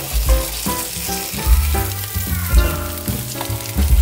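Tofu slices sizzling as they pan-fry in oil in a Staub cast-iron skillet, while a slotted spatula is worked under slices that have stuck to the pan bottom. Background music with a stepping melody and bass notes plays over the frying.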